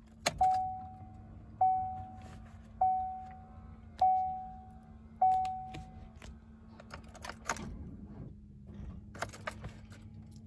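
A 2014 Chevrolet Impala's warning chime dings five times, about a second apart, as the ignition is switched on. Near the end the starter cranks weakly on a jump box and the engine doesn't catch.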